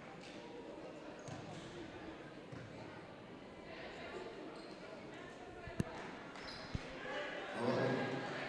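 Gymnasium crowd murmur echoing in a large hall, with a basketball bounced twice on the hardwood floor about a second apart, a little past the middle. Voices grow louder near the end.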